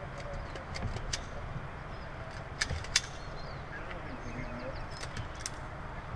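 A series of sharp clicks and taps: a few in the first second, the two loudest about two and a half and three seconds in, and more near the end. They sit over a steady low outdoor rumble, with faint high bird chirps.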